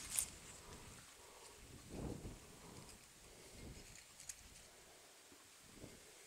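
Quiet outdoor ambience with a few faint, soft handling and rustling sounds of wheat stalks being handled, the clearest about two seconds in.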